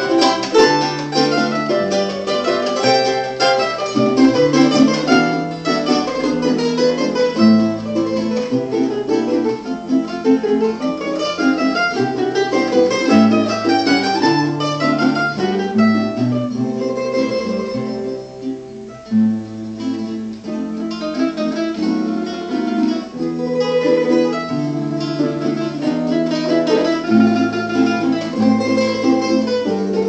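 Live acoustic plucked-string trio playing a Venezuelan waltz: a nylon-string classical guitar with a stepping bass line, a small mandolin-like instrument and a third stringed instrument. The playing goes briefly softer about eighteen seconds in.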